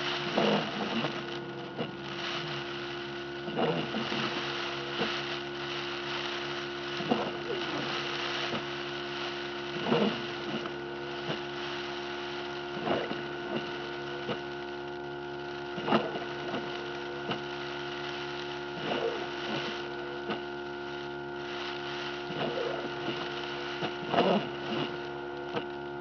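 Steady hum inside a car's cabin while the car sits idling, with short, faint sounds every two to three seconds on top.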